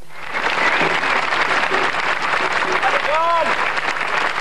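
A crowd applauding, the clapping starting suddenly just after the beginning and keeping on steadily. About three seconds in, a single voice calls out over it.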